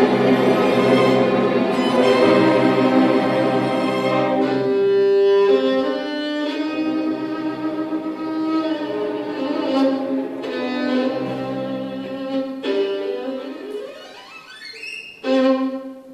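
Solo violin playing with a string orchestra: full ensemble for the first few seconds, then thinner sustained solo lines over the strings. Near the end the violin runs steeply upward to a high note, then a short chord closes the passage. The solo violin is an old instrument, about 300 years old, bearing a Carlo Bergonzi label.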